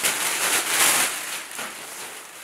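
Clear plastic packaging bag crinkling and rustling as a garment is pulled out of it by hand, louder at first and dying down over the second half.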